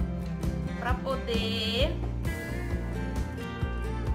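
Background music: a tune of held notes with a wavering, sliding melody line about a second in.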